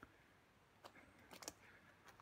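Near silence with a few faint snaps of twigs breaking, once a little under a second in and a small cluster about a second and a half in.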